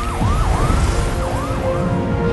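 Police car siren on a fast yelp, rising and falling about three times a second and fading near the end, over a low rumble.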